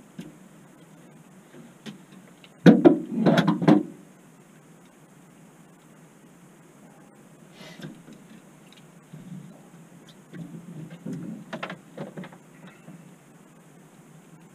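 Knocks and clatter on a fishing boat while a freshly caught bass is handled: a loud burst of several knocks about three seconds in, and a lighter run of knocks near the end.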